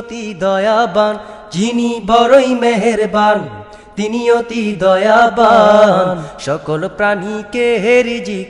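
A voice singing a Bengali Islamic gojol, with long sung phrases that glide up and down and short breaks between them.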